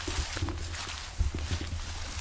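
Footsteps and rustling through leafy forest undergrowth, with a few soft knocks a little past a second in, over a steady low rumble on the microphone.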